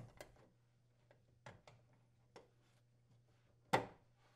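Steel junction box cover being fitted onto a metal electrical box by gloved hands: a few faint scattered clicks and taps, then one sharper click near the end as the cover seats.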